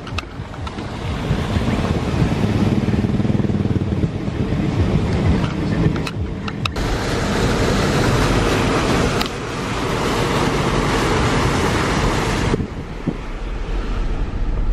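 Car driving through deep floodwater, heard from inside the car: steady engine and road rumble with water rushing and splashing around the wheels. The rushing gets louder for about five seconds in the middle, then drops away near the end.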